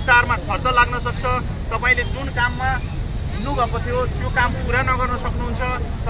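A man's voice speaking continuously through a handheld megaphone, over a steady low rumble of street traffic.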